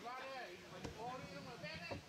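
Faint voices of people talking in the background, fairly high-pitched, with a light knock about a second in.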